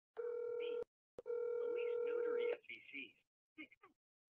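Telephone tone from a phone on an answered call: a steady buzzy tone for about half a second, two sharp clicks, then the tone again for over a second with faint voice sounds over it, followed by a few short faint voice fragments.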